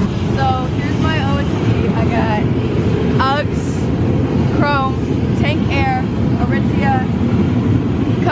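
People's voices calling out and laughing in short bursts over a loud, steady low rumble.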